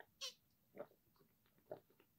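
Faint swallowing of water from a plastic bottle: a few separate gulps about a second apart.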